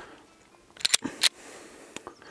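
A pistol being handled: a quick cluster of sharp metallic clicks about a second in, then one more click.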